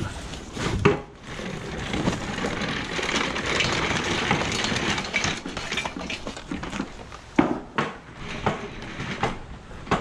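Rustling and clatter of junk being handled and loaded, with a sharp knock about a second in and two more a little after seven seconds.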